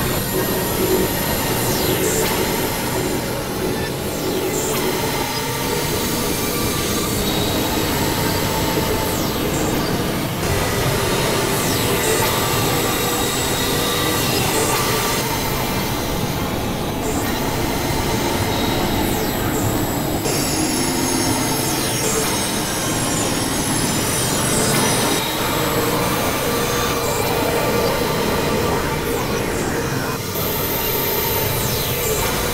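Experimental electronic noise music from synthesizers: a dense, steady body of noise with several held high tones and sliding pitches, including a run of quick slanted pitch sweeps high up about two-thirds of the way in.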